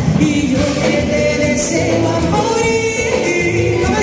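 Live dance band playing a cumbia, with group singing over drums, electric guitar and bass guitar.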